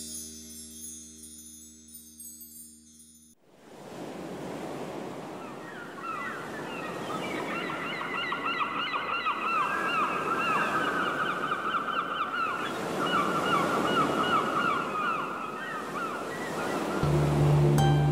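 A held musical chord fades and cuts off about three seconds in. A steady rushing noise of surf follows, with birds calling in quick repeated chirps through most of the rest. Music comes back in with a low held note near the end.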